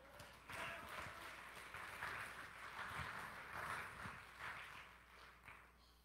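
Faint scattered applause from the congregation, dying away about four and a half seconds in.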